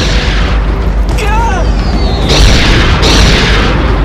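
Explosion sound effects booming over a loud, deep rumbling score: one blast at the start and two more a little after two and three seconds in.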